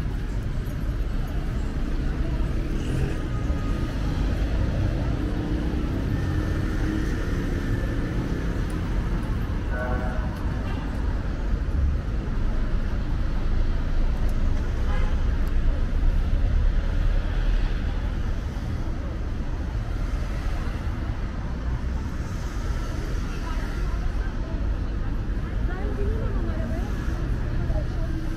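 Steady road-traffic rumble from cars along a city street, with passers-by talking.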